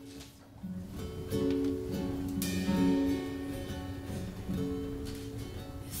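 Acoustic guitar playing a slow, picked song intro, single notes and chords ringing on one after another.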